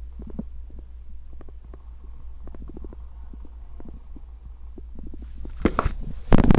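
Handling noise from a hand-held camera: soft, irregular low knocks and rubs over a steady low hum, with a few louder bumps near the end.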